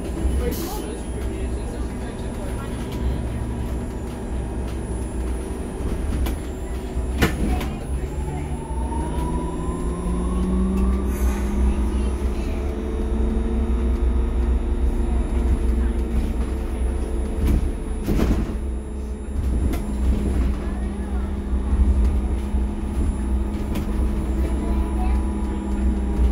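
Cabin sound of an SOR NS 12 electric city bus under way: a low road rumble, with the electric traction motor's whine rising in pitch as the bus pulls away about seven seconds in, then holding steady. There are two sharp knocks from the body, one about seven seconds in and one about eighteen seconds in.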